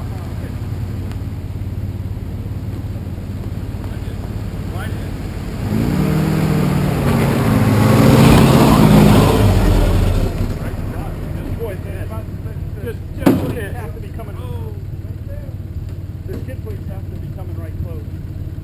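Off-road Jeep engines idling. About six seconds in, one Jeep climbs the rock close past the camera, and its engine swells, rises in pitch and falls away by about ten seconds. A single sharp click comes shortly after.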